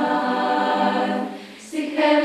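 Girls' choir singing a cappella: a held chord that fades out about a second and a half in, a brief pause, then the next phrase begins near the end.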